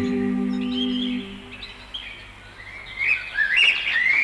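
The last held chord of an a cappella vocal group fades out about a second in. Then come bird chirps and short warbling whistled phrases, sparse at first and fuller and louder near the end.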